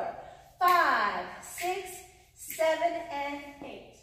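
A woman's voice calling out in two phrases, the first sliding down in pitch.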